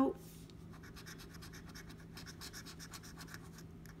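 Scratch-off lottery ticket being scratched off with a small hand-held scraper: a run of quick, light scraping strokes on the card's latex coating.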